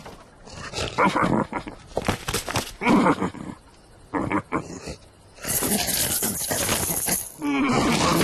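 Cartoon lion's vocal effects: a string of short grunts and growls, then a loud rushing noise about five and a half seconds in, and a louder strained cry starting near the end.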